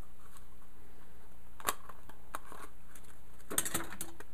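Light clicks and taps from handling a no-hub clamp, its stainless steel band and rubber sleeve: one sharp click a little before the middle and a quick cluster of clicks near the end, over a low steady hum.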